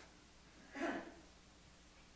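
Near silence of a quiet room in a pause between spoken sentences, broken about a second in by one brief, soft, breathy sound from a person.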